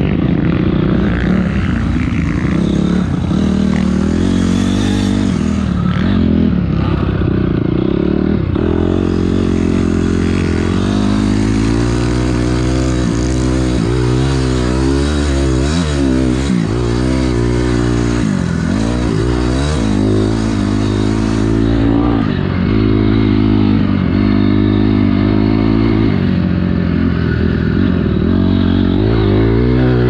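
A 2006 Honda CRF250R's single-cylinder four-stroke engine, heard close from on board while riding a motocross track. It revs up and drops back again and again as the throttle is opened and closed through corners and shifts.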